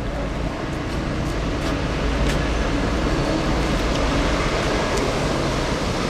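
Steady urban road-traffic rumble, a low, even noise that swells slightly through the middle, with a few faint clicks.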